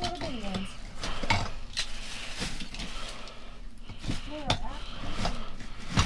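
Scattered knocks and clinks of a grabber pole and hard objects being shifted among trash bags inside a metal dumpster.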